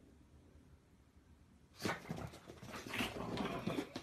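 A pug making short excited vocal sounds at a toy. The first half is quiet, then the sounds start suddenly about halfway through and come in a quick run of short bursts.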